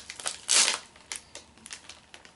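Plastic snack packet crinkling and crackling as it is opened and handled, with one louder rustle about half a second in and scattered small crackles after it.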